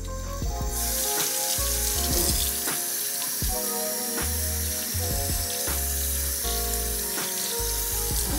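Kitchen tap running in a steady stream onto a potted plant's soil and into a stainless steel sink, starting just under a second in. Background music with a bass line plays along.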